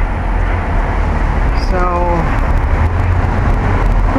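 Cars passing on the street: a steady rush of road traffic noise. A short falling voice sound is heard about halfway through.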